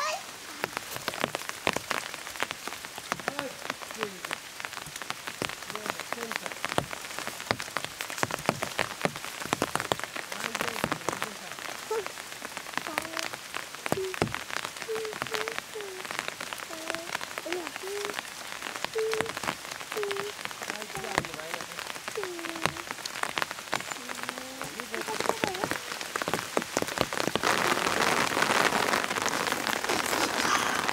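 Rain pattering on forest leaves: a dense, irregular patter of drops that grows louder and thicker near the end.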